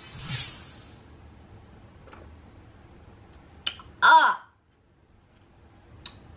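A woman's short vocal groan of disgust about four seconds in, falling in pitch, at the taste of a very tart lemon-ginger-kale juice, after a brief rushing noise at the start.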